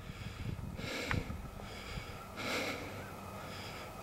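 A person breathing close to the microphone: two soft, hissy breaths about a second and a half apart, over a faint outdoor hush.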